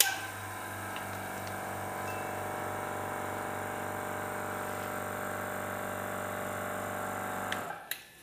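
A small electric motor on a piece of laboratory equipment switches on with a click, hums steadily for about seven and a half seconds, then switches off abruptly.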